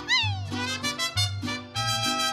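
Mariachi band playing. A trumpet slides down in pitch right at the start, then held trumpet notes ring over short, repeating low bass notes.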